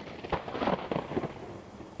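Thunderstorm: rain with irregular crackles of thunder.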